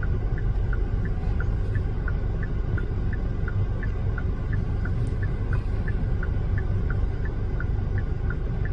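A car's indicator flasher ticking steadily, alternating a higher and a lower click about three times a second, over the low rumble of the idling engine heard from inside the car.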